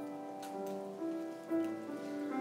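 Slow instrumental music on a keyboard, held chords changing every half second or so, with a few light clicks about half a second in.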